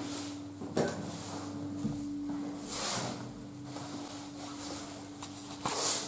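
Handling and clothing-rustle noise from a hand-held camera as its wearer moves about a small room, with a sharp click about a second in and two brief hissy rustles, over a steady low hum.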